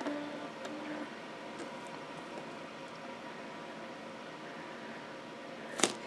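Quiet room tone with a steady faint hiss and hum. Two brief, faint low tones come in the first second.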